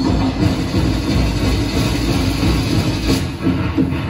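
Loud, continuous drum-and-percussion music from a festival street-dance ensemble.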